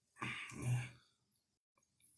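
A man clearing his throat once, a short rough sound lasting under a second.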